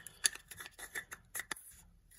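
A metal lens-mount adapter and a plastic cap being handled and fitted together: a run of light, irregular clicks and taps, about eight in two seconds.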